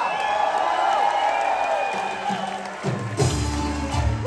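Cast and audience cheering, with a long drawn-out shout fading over the first second or so. About three seconds in, band music with a heavy bass beat starts up.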